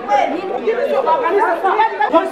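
Several people talking over one another: loud, overlapping chatter.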